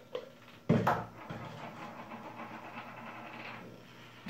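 Handling noise off camera: a sharp knock just under a second in, then a few seconds of steady rustling that fades out before the end.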